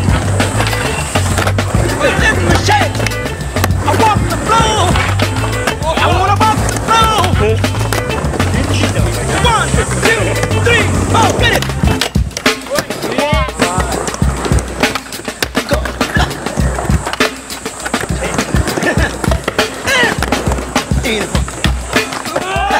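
Skateboard wheels rolling and boards knocking on concrete ramps, under a loud funk track. The music's bass line drops out about halfway, leaving mostly sharp knocks.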